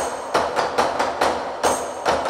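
A bucket-drumming ensemble hitting upturned plastic buckets with drumsticks in a steady, even rhythm of sharp strokes, about four a second.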